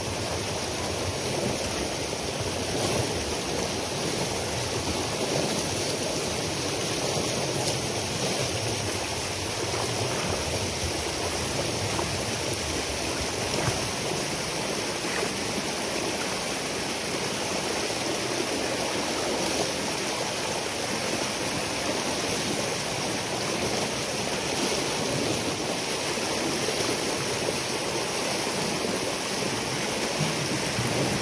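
Water rushing steadily through a breach in a beaver dam made mostly of peat, the pond behind it draining fast.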